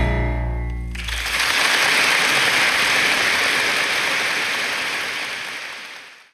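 The final chord of a live jazz piano trio (piano, double bass and drums) rings out with a deep bass note, then about a second in the audience starts applauding; the applause holds steady and fades out near the end.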